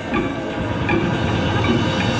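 A live band playing: a dense, droning mix of keyboard and percussion with a steady pulse.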